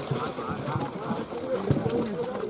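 Several men's voices talking over one another, with short splashes from catla fish crowded in a drag net in the water.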